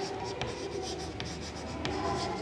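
Chalk writing on a chalkboard: scratchy strokes with a few short, sharp clicks as the letters are formed.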